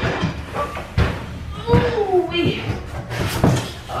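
A large cardboard shipping box being lowered and set down on the floor: a few dull knocks and thuds, the loudest about a second in.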